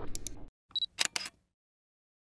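End of a radio station's ident jingle: the music tail dies away within half a second, then three short sharp clicks come about a second in, the first with a brief high beep.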